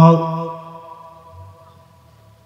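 A man's chanted sermon voice holding one long, steady note through the microphones. The note breaks off about half a second in and fades away over the following second.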